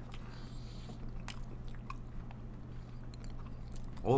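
Close-up chewing of a mouthful of burger, with faint mouth clicks scattered through, over a steady low hum.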